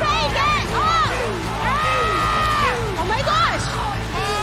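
Several people screaming and whooping with excitement in short, high, rising-and-falling cries, with one long held scream near the middle. A steady low music bed runs underneath.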